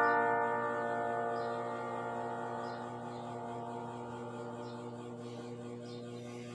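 The final chord of the song's piano accompaniment ringing out and slowly fading away, leaving a steady low electrical hum.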